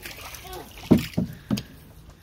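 Canoe paddles dipping and pulling through calm water, with three short, sudden strokes or splashes around the middle, and faint voices in the background.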